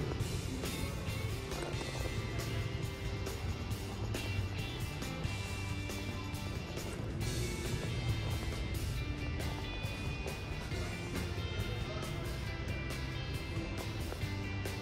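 Background music playing steadily, with pitched instruments and percussion.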